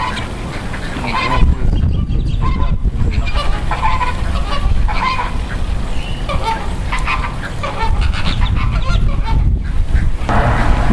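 A flock of flamingos honking, many short calls overlapping and repeating, over a steady low rumble.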